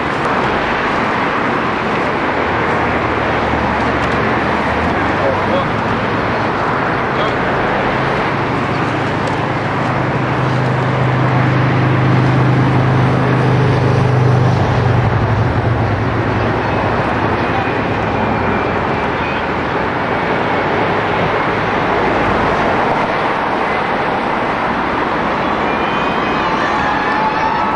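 Steady outdoor rumble and hiss, with a low engine hum that swells about ten seconds in and fades a few seconds later.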